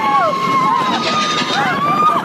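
Several riders screaming and yelling at once on a mine-train roller coaster. The long held screams overlap, over the rumble and rush of the moving ride.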